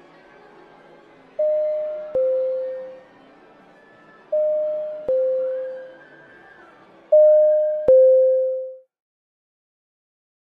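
A two-tone chime rings three times, each time a higher note falling to a lower one, with the third the loudest, over a faint background murmur. It is the theatre signal that intermission is ending.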